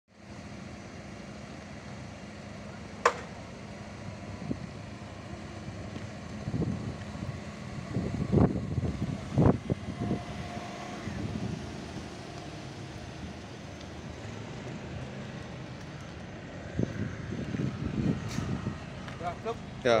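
Power soft top of a Volkswagen Beetle Cabriolet opening and folding down: a sharp click about three seconds in, then a few clunks and knocks as the frame moves and settles, over a steady low hum.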